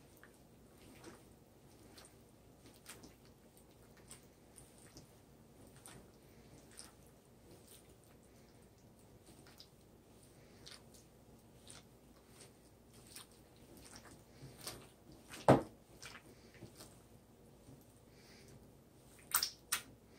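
A bare hand squishing and mixing beaten eggs with pepperoni and roasted cauliflower in a bowl: faint wet squelching with small clicks. One sharp, loud knock about three-quarters of the way through.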